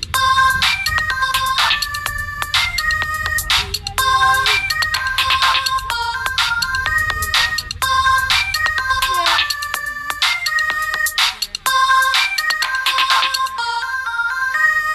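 Electronic beat playing back from a music-making app: a melody of short, high synth notes over a drum pattern and a low bass, the same phrase repeating about every four seconds.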